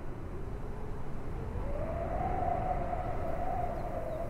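A single long, wavering droning tone that rises in pitch about a second and a half in and then holds, over a low rumble.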